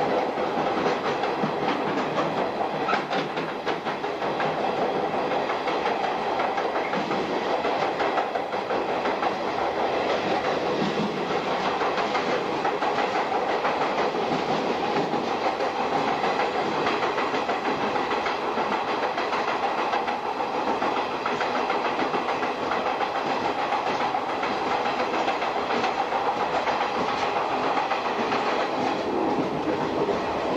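Electric suburban commuter train running steadily through a tunnel, heard from the cab: continuous rolling noise of wheels on rails with a fast, fine clatter.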